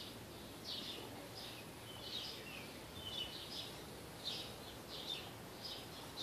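A small bird chirping: short, high, slightly falling chirps repeated irregularly, about one or two a second, faint over a steady background hiss.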